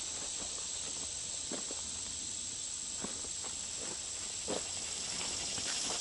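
Steady high-pitched buzzing of insects in summer woodland, with a few faint steps in the grass.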